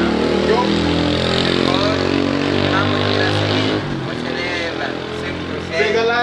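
A motor vehicle engine running steadily close by, with faint voices over it; the engine sound drops away about four seconds in.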